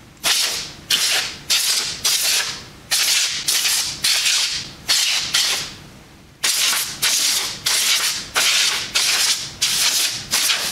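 Can of compressed air sprayed in short, sharp blasts into a graphics card's finned heatsink, about two hissing bursts a second with one brief pause midway. The can is running low and losing pressure.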